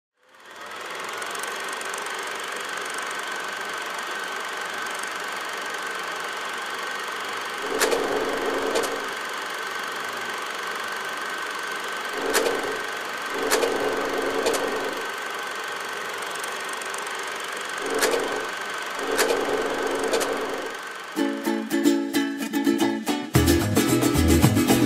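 Film-projector sound effect: a steady whirring hum, broken a few times by a click and a short low swell. Near the end it gives way to fast pulsing music with a beat.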